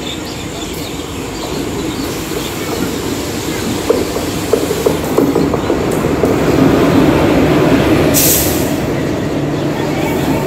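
Electric locomotive hauling a passenger train along the station platform, its rumble building as the locomotive comes level, with a quick run of clicks from the wheels over the rail joints about four to six seconds in. A short hiss comes near the end.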